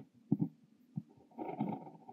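Brass Kaweco Liliput fountain pen with an extra-fine nib scratching across notebook paper as it writes Korean characters. There are two brief strokes, then a longer stroke about a second and a half in.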